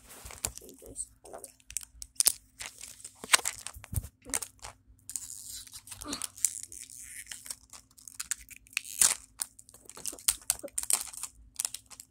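Plastic wrapping on a Mini Brands toy capsule being torn and crinkled open, partly with the teeth, in many irregular sharp crackles and rips.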